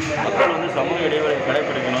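Speech: a person talking, with no other clear sound standing out.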